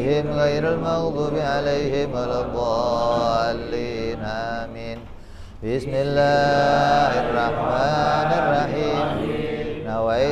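A man's voice chanting Arabic in a slow, melodic recitation style, holding long wavering notes, with a short breath pause about five seconds in.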